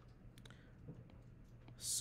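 A few faint, soft taps of a stylus tip on a tablet's glass screen as numbers are handwritten.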